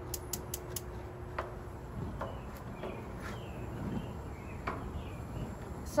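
Gas grill burner being lit: the control knob turned and the spark igniter clicking four times in quick succession within the first second, then faint scattered clicks. Birds chirp faintly in the background.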